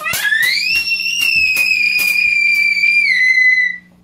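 A child's long, very high-pitched scream that rises in pitch over the first second, holds, dips slightly about three seconds in and breaks off just before the end, over a run of quick clicks.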